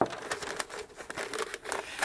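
Butcher paper rustling and crinkling as it is wrapped by hand around a tumbler, with a sharp crackle right at the start.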